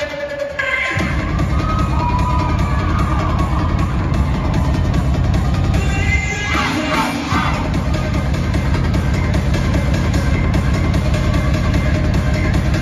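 Dance routine music with a heavy, steady bass beat playing over an arena sound system; the bass beat kicks in about half a second in.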